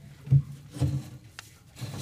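Metal water pan being slid into place inside an electric smoker cabinet, with two dull knocks in the first second and a faint click a little later.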